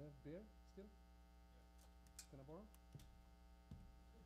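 Near silence under a steady electrical mains hum, with two brief faint voices and a few small clicks.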